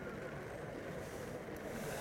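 Steady low rumble of outdoor background noise, with a brief hiss near the end.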